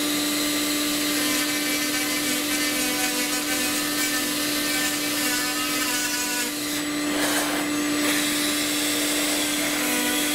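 Cordless rotary tool running at a steady high speed, its cutting bit grinding out a servo-bay opening in a model glider's fuselage, with a vacuum hose at the cut. The grinding gets rougher for about a second around seven seconds in.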